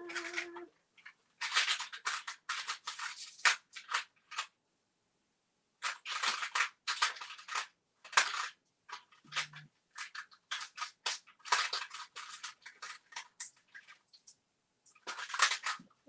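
Repeated bursts of crinkling and rattling as jewelry and its packaging are handled and sorted, in clusters of about a second with short pauses between, and a brief low hum about nine seconds in.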